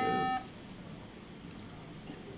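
A short electronic computer beep, under half a second long, followed by quiet room tone.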